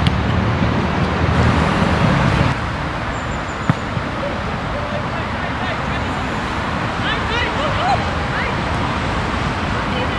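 Outdoor football-match sound: distant shouts of players on the pitch over a steady rushing background noise, heavier for the first couple of seconds, with one sharp knock a few seconds in.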